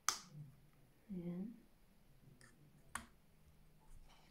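Sharp plastic clicks from handling a DJI OM 4 smartphone gimbal: the loudest right at the start, a smaller one about two and a half seconds in and another near three seconds. A short hummed 'mm' is heard about a second in.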